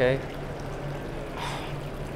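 Steady wash of running water over a low, even hum, with a faint brief rush about one and a half seconds in.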